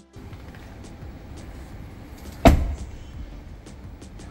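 An Aston Martin DBX's rear door being shut, one heavy thud about two and a half seconds in, over a steady room background with faint music.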